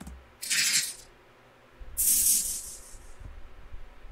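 Two bursts of high hiss with no pitch: a short one about half a second in and a longer one about two seconds in, fading out.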